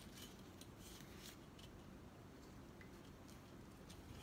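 Near silence with a few faint, scattered clicks from a tripod easel's metal legs and plastic lock fitting being handled and adjusted.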